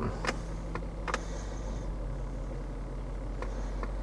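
BMW X5 4.6is V8 idling steadily, heard from inside the cabin as a low hum. A few light clicks come over it.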